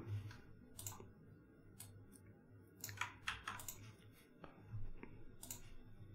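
Faint, irregular keystrokes on a computer keyboard, a few at a time, over a low steady hum.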